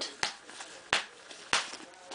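Plastic snaps on a cloth diaper cover popping open as the rise is unsnapped from its smallest setting: three sharp clicks, a little over half a second apart.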